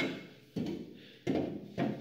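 A steel sway bar being slid through a hole in a Land Rover Series 88 chassis frame, giving about four separate knocks, each fading quickly, as the bar shifts against the frame.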